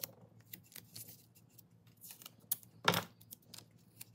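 Blue painter's tape being handled by hand and pressed around a wooden plane handle: crackling tape and small sharp ticks, with one louder, sharper noise near three seconds in.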